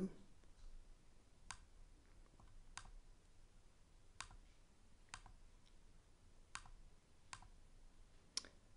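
Computer mouse clicking faintly: about six single clicks, spaced one to one and a half seconds apart, over near-silent room tone.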